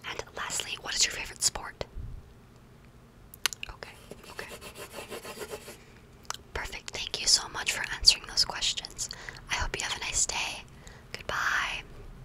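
Soft whispering close to the microphone, with a pencil rubbing and scratching on paper as answers are written down. The whispering comes in stretches, with a quieter spell of faint scratching in between.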